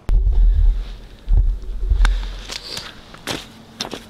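Boots walking across snow-covered pond ice, with a heavy low rumble on the microphone over the first couple of seconds and a few sharp clicks later on.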